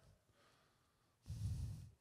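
A short hush, then about a second and a quarter in, a man's breath taken close to a handheld microphone, lasting about half a second.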